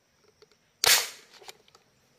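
A single sharp shot from a marble gun about a second in, dying away within a fraction of a second, followed by a faint click about half a second later.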